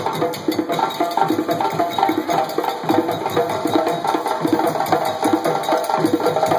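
West African barrel drums, dunun-style, played with sticks in a fast, steady dance rhythm of closely packed strokes.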